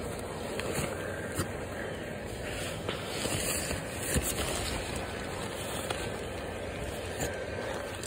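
Steady whoosh of a yard inflatable's blower fan running as the inflatable fills, with a few light clicks of handling.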